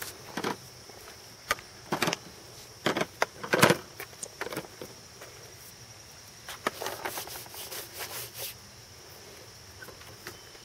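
Irregular clicks and clatter of toddlers' painting tools and plastic paint dishes knocking against a plastic table and a wooden easel, the loudest knock a little before four seconds in. A steady high insect drone runs underneath.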